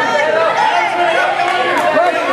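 Several voices talking and calling out at once, overlapping chatter from the people around a wrestling mat.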